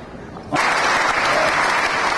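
A large audience applauding, the clapping starting suddenly about half a second in and holding steady.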